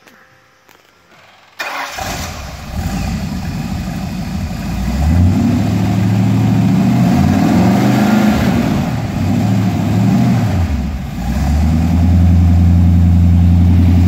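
Ford 302 small-block V8 (5.0 litre) in a 1928 Ford Model A street rod cranking briefly and starting about a second and a half in, revved up and down a few times, then settling into a steady idle that is nice and smooth.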